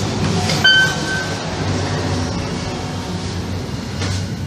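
Inside a Mitsubishi machine-room-less elevator car: a short electronic beep about half a second in, as a floor button is pressed, over the steady low hum and rumble of the car.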